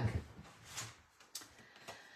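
Faint rustling and two light clicks of card stock being handled and picked out.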